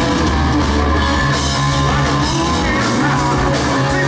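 A live hard rock band playing loud: distorted electric guitars, bass and drum kit, with a lead singer's voice over them.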